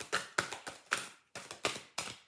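A deck of cards being shuffled by hand: a quick, irregular run of sharp card slaps and flicks, about five a second.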